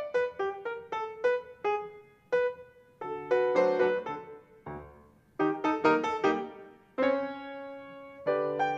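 Solo piano accompaniment: a light tune of short struck notes and chords, each fading quickly, ending on a chord held for about a second.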